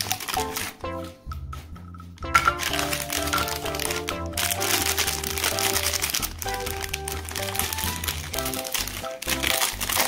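Foil-lined plastic ice cream bar wrapper crinkling and crackling as it is handled and peeled open, over background music with a simple stepping melody. The crinkling thins out briefly about a second in.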